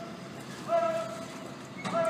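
A man's voice calling marching cadence to a color guard: two short calls on the same pitch, the second with a sharp knock.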